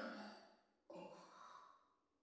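A faint, breathy sigh about a second in, otherwise near silence.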